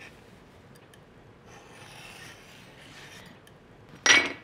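Faint sound of a small knife cutting through a sheet of puff pastry on a floured board, the blade traced around the rim of an upturned glass bowl.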